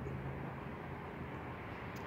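Steady low background noise outdoors, with a faint low hum that fades out about a second in; no distinct sound stands out.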